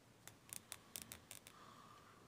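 Near silence: quiet room tone with several faint, light clicks in the first second and a half.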